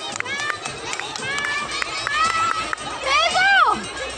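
Young children shouting and calling out in high voices, with one loud, drawn-out cry about three seconds in that rises and then falls in pitch. Short sharp clicks run through it.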